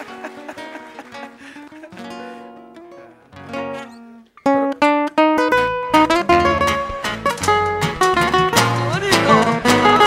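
Acoustic guitars playing the introduction to a Peruvian criollo vals: a soft, picked guitar passage that breaks off, then about four and a half seconds in a much louder full entry of guitars, with cajón thumps joining about a second later.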